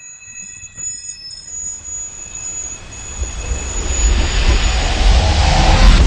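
Film sound design for a slow-motion shooting: thin high ringing tones fade away while a deep rumbling roar of slowed-down gunfire swells steadily louder, at its loudest near the end.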